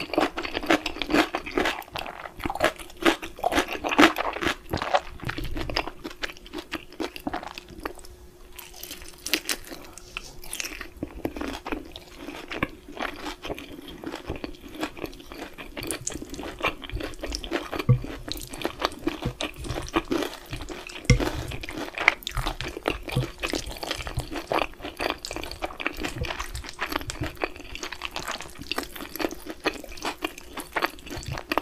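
Close-miked eating sounds: a person chewing and crunching, with a dense run of short clicks and crackles from the mouth, while eating Korean black-bean instant noodles and fried chicken.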